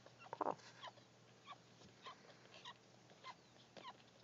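Newborn Chinese Crested puppies nursing: faint, short suckling clicks every half second or so, with one brief puppy whimper about half a second in.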